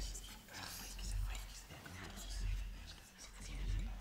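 Faint, indistinct whispering over a low rumbling drone that swells and fades about every second and a quarter.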